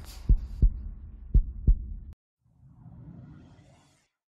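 Logo sting sound effect: deep bass thumps in pairs, two pairs about a second apart, over a low hum. It cuts off suddenly about two seconds in and is followed by a soft low whoosh.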